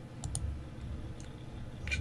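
A computer mouse button clicking a few times, short sharp clicks with the clearest pair about a quarter of a second in, over a faint low steady hum.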